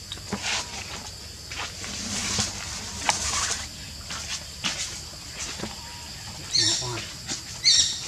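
Irregular crinkling and rustling of a paper wrapper handled by a long-tailed macaque, with two short high-pitched calls near the end.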